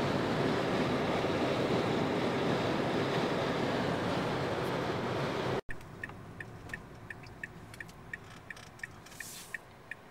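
Car cabin noise at highway speed: a steady rush of road and engine noise. It cuts off suddenly about halfway through, and a much quieter car interior follows with a turn-signal relay ticking evenly about three times a second.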